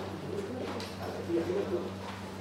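Indistinct, low voices murmuring in a room, in short broken fragments over a steady low electrical hum.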